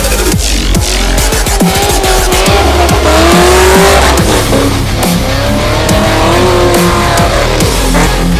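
A drift car's engine held at high revs, its pitch wavering up and down as the car slides sideways through a wet corner, mixed under loud electronic dance music with a heavy beat.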